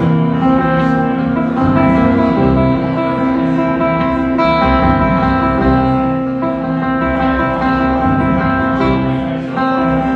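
Acoustic guitar played solo, an instrumental passage of strummed and picked chords with no singing.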